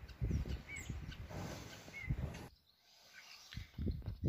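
Hands working dry garden soil around seedlings, soft scraping, rustling and dull taps, with two short faint bird chirps about a second apart. The sound drops almost to nothing for about a second after two and a half seconds.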